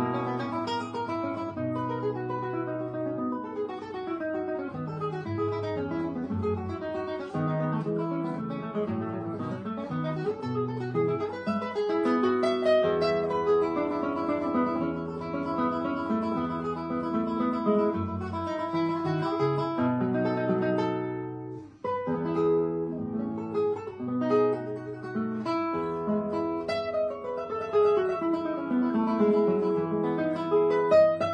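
Solo classical guitar, nylon strings plucked in a continuous melodic passage. The playing breaks off for a moment about two-thirds of the way through, then resumes, with a descending run of notes near the end.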